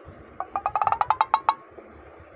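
Comic sound effect: a quick run of about a dozen short pitched knocks that speed up, lasting about a second and stopping halfway through.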